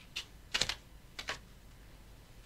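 A few faint, short clicks or taps, three or four spread over two seconds, the loudest a double click a little after the half-second.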